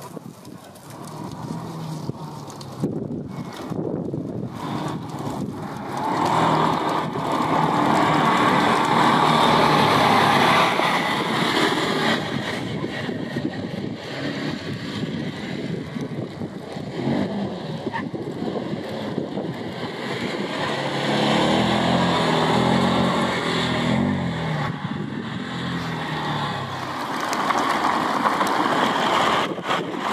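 Off-road 4x4's engine running and revving on a course, its pitch and loudness rising and falling with the throttle. It is loudest about a quarter of the way in and again two-thirds through and near the end.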